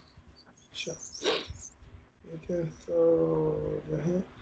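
A dog barking and whining in the background of an online call.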